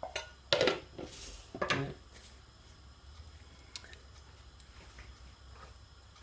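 A couple of short clatters of pans or utensils in the first two seconds, then quiet kitchen room tone with a faint low hum.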